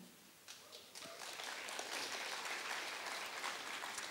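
Audience applauding: after a brief hush, the clapping comes in about a second in and goes on steadily and fairly faintly.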